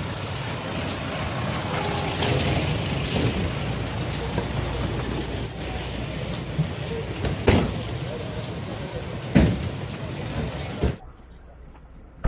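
SUVs of a convoy rolling slowly past and pulling up, a steady rumble of engines and tyres with voices mixed in and a couple of sharp knocks near the middle. The sound drops away suddenly about eleven seconds in.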